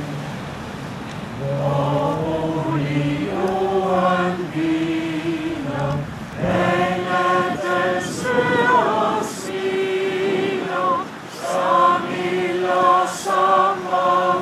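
A congregation singing a hymn together in slow, held notes, phrase by phrase with short breaks between phrases.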